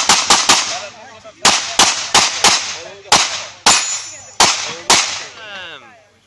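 Handgun shots on an IPSC practical shooting stage: about eleven sharp shots, mostly in quick pairs with short uneven pauses between them, each ringing on briefly. The string stops about a second before the end.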